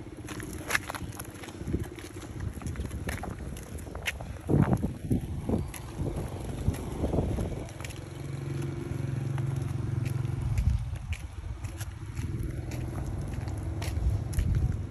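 Small plastic wheels of a toddler's balance bike rolling over paving bricks and asphalt: a rough low rumble with scattered clicks and knocks, a few louder knocks in the middle, and a steady low hum for a few seconds in the second half.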